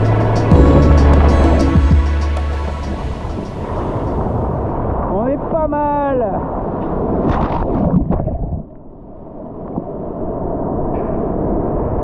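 Background music with a heavy bass fades out over the first few seconds. Ocean surf then washes and churns around the microphone at water level, with a brief voice about six seconds in.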